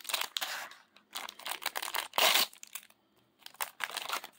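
A thin crimp-sealed plastic packet being torn open and crinkled by hand, in irregular crackling bursts. The loudest tear comes about two seconds in, followed by a brief lull before more crinkling.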